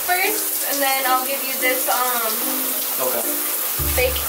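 Shower spray running steadily, a continuous hiss of water falling onto a person in a shower stall, with a singing voice over it.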